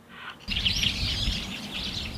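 Small birds chirping and twittering in a dense chorus over a low outdoor rumble. The sound starts suddenly about half a second in.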